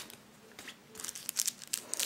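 Packing stuffing being pulled away by hand, crinkling and rustling in scattered crackles that bunch up in the second half.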